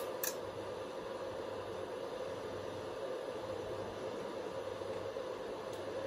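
Steady hiss of an amateur radio transceiver's receiver, with a faint low hum under it, while the operator listens for a reply between calls. Two short clicks come right at the start.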